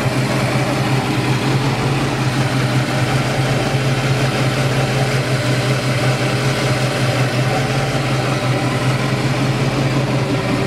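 A 1971 Plymouth Barracuda's 340 four-barrel V8 idling steadily.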